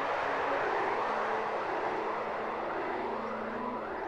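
A steady rushing noise with a few faint held tones underneath it.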